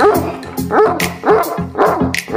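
A dog barking four times in quick succession, about half a second apart, over background music with a steady beat.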